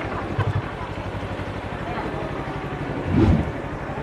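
Assassin 400 motorcycle engine idling with an even low pulse while the bike waits with rider and passenger aboard, with a short louder low surge about three seconds in.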